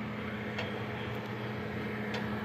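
Philco PMO23BB microwave oven running: a quiet, steady low hum, with a few faint ticks that the owner puts down to the glass turntable's plastic rollers turning.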